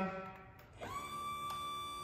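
Stryker Power-PRO XT powered ambulance cot, docked in a Power-LOAD system, giving a steady high-pitched tone that starts about a second in and holds level after the minus button is pressed to retract its legs.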